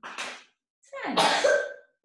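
A person coughing twice: a short cough at the start and a longer one about a second in.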